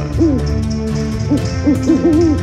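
A few short owl-like hoots over a background music track.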